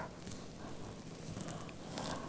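Faint rustling of clothing as two people hold each other close, over a low steady hiss, with a few soft clicks.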